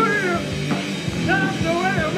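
Live rock band playing: bass guitar, drums, guitar and keyboard, with a high wavering line gliding up and down over steady low notes and a regular drum beat.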